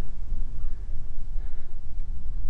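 Strong wind buffeting the microphone: a heavy, unsteady low rumble.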